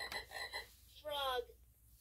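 VTech Touch & Teach Elephant toy's speaker playing a sound effect as its number 6 button is pressed: a short burst of bright electronic tones, then a falling, animal-like pitched call about a second in.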